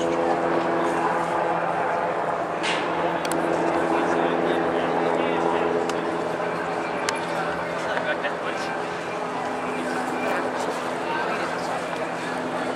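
A large engine running steadily at idle, a constant low hum with an even pitch, under indistinct voices in the background.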